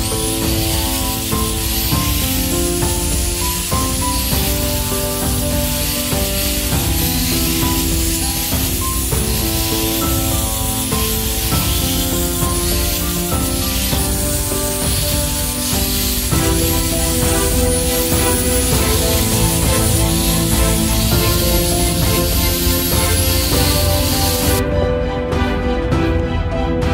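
Background music playing over an angle grinder with a sanding pad sanding a wooden car body: a steady hiss with a high motor whine that wavers as the load changes. The sanding cuts off suddenly near the end, leaving only the music.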